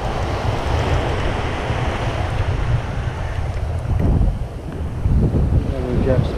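Surf washing up the beach in a steady rush, with wind buffeting the microphone in a heavy low rumble; the rush eases briefly a little past the middle.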